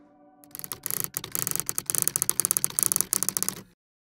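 Logo sting sound effect: a fast run of mechanical clicking, like a ratchet or typewriter, that grows louder from about half a second in and cuts off suddenly just before the end.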